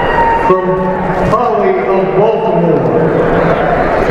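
A man announcing names over an arena public-address system, his voice echoing through the hall.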